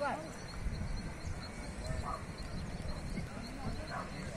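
Faint distant voices over a low steady rumble of wind on the microphone.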